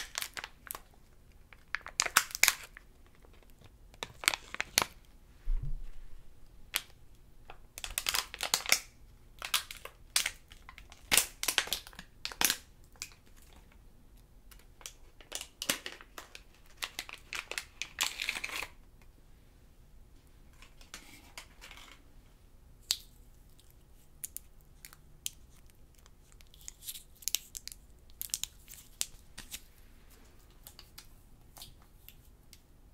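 Foil-lined candy wrapper crinkling and tearing as it is opened, in irregular bursts of crackling with short gaps between. Lighter, quicker crinkles near the end.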